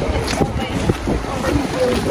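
Wind buffeting the phone's microphone with a heavy, uneven low rumble, and indistinct voices of passers-by mixed in.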